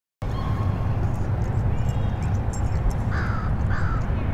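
Two short falling bird calls near the end, over a steady low rumble of outdoor ambience.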